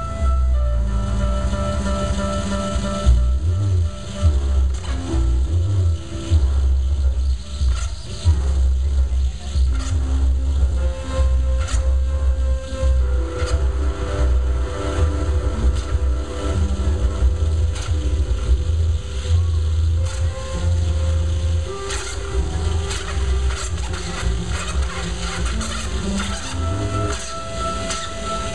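Live electronic music played loud through a club PA: a deep, heavy bass held in long notes, with sustained tones above it that shift in pitch every few seconds.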